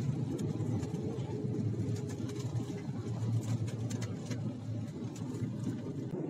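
Passenger jet cabin noise heard from a window seat while the airliner moves on the ground: a steady low engine hum, without any surge.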